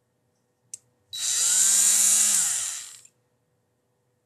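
Handheld rotary tool with a radial bristle disc: a switch click, then the motor spins up, runs for about two seconds and winds down. It is a short test run to check the direction of rotation.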